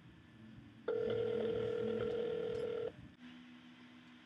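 Telephone ringback tone heard through a phone's speaker: one steady ring lasting about two seconds, starting about a second in, followed by a fainter, lower steady tone near the end.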